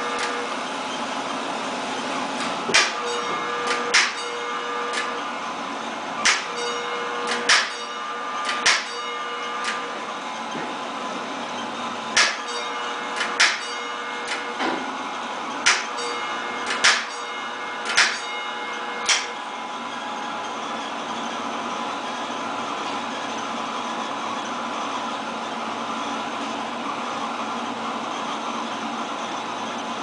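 Electric fire alarm bells of a 1940s Standard Electric Time Company coded system striking the code 2-3: two strokes, a pause, then three strokes, heard twice. These are the last rounds of the signal. The striking stops about 19 seconds in, and only a steady background noise follows.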